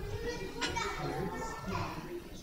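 Indistinct chatter of several people talking at once away from the microphone, with children's voices among them.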